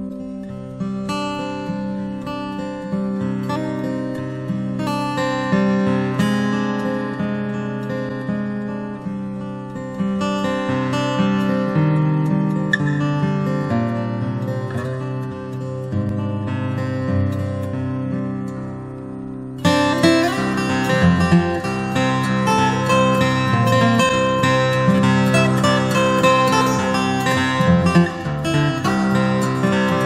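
Acoustic guitar played fingerstyle, picked melody notes ringing over a bass line. About two-thirds of the way through, the playing suddenly turns louder and brighter, with denser picking.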